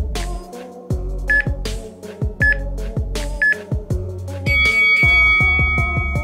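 Workout interval timer giving three short countdown beeps about a second apart, then one long, louder beep that marks the end of the work round and the start of rest. Background music with a steady beat plays throughout.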